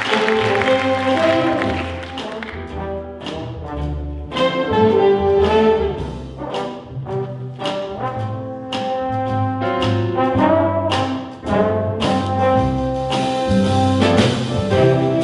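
A big band plays swing jazz: a trombone line with bends and wavering pitch over the rhythm section, answered by short punchy chord hits from the full horn section.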